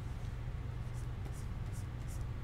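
A stylus stroking across a Wacom graphics tablet: a few short, hissy strokes in the second half, over a steady low hum.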